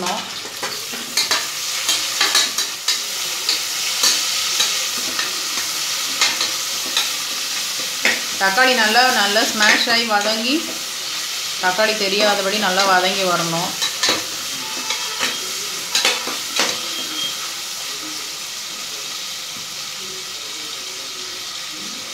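Onions and tomatoes sizzling in hot oil in an aluminium pressure cooker, stirred with a metal spatula that clicks and scrapes against the pot. The sizzle eases a little over the second half.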